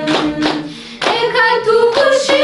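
Voices singing together with hand-clapping keeping the beat; the singing drops away briefly just before a second in, then comes back.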